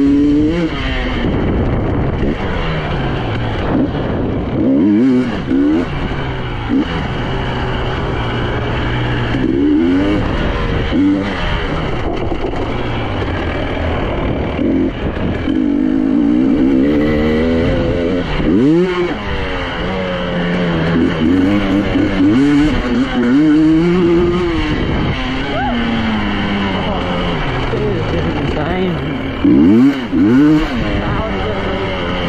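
2023 KTM 300 EXC two-stroke single-cylinder engine being ridden hard on a dirt trail, its pitch rising and falling again and again with the throttle and gear changes, with several sharp revs up.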